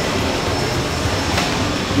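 Steady machinery noise of a working screen-printing shop: a continuous low rumble and rush of fans and running equipment, with a thin high whine throughout.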